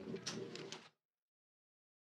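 Press-room bustle as the room breaks up: a few sharp clicks and knocks, likely chairs, papers and footsteps, over a low murmur. The sound cuts off abruptly to dead silence about a second in.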